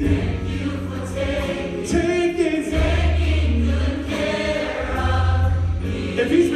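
Large gospel choir singing, backed by a live band with a deep, steady bass line.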